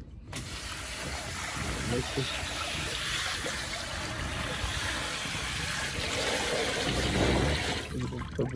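Water from a garden hose running into a plastic tub already holding water, a steady rush that starts abruptly just after the beginning and stops near the end.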